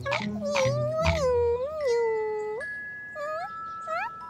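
A cartoon voice making a long wordless vocal sound that falls in pitch, over light children's background music. Sustained chime-like notes come in about halfway.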